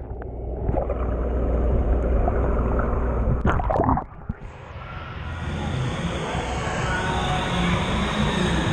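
Water in an indoor swimming pool heard from underwater: a dull, muffled rumble with bubbling. About three and a half seconds in, splashes break it as the surface is crossed, and from about five seconds on the sound is the open, hissing wash of splashing pool water.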